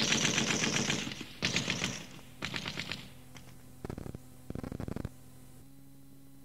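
Sound-effect machine-gun fire on a cassette recording: a long rattling burst, then shorter bursts that grow fainter, over a steady low hum.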